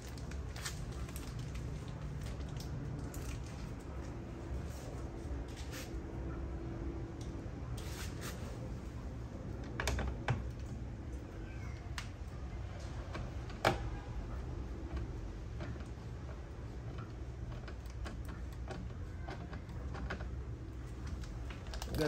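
Light, irregular plastic clicks and taps from handling a car side-mirror housing and turn signal unit with a hand screwdriver, with two sharper knocks about ten and fourteen seconds in, over a steady low hum.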